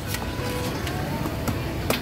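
Cleaver chopping the husk of a green coconut on a wooden block: a few sharp chops, the loudest just before the end, over background music and steady street noise.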